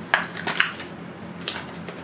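A plastic wax melt clamshell being handled, giving several short, sharp crinkly clicks.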